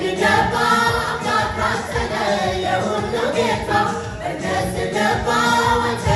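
Women's choir singing a church song together, led by voices on microphones.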